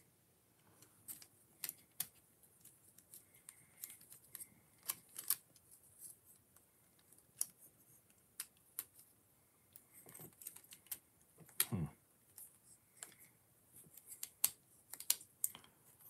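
Plastic Technic-style building-block pieces clicking and tapping as they are handled and pressed together: faint, scattered, irregular clicks, with one louder knock about twelve seconds in.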